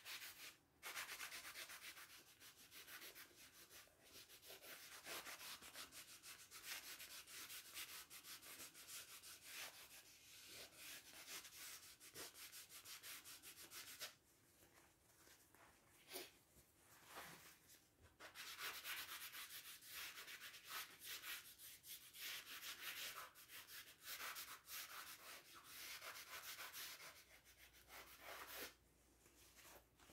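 Blue shop paper towel rubbed over a wet oil-painted stretched canvas to blend the paint: faint, scratchy rubbing in repeated strokes, pausing briefly about halfway and near the end.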